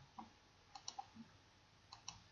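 Faint computer mouse clicks, about half a dozen, some in quick pairs, over near-silent room tone.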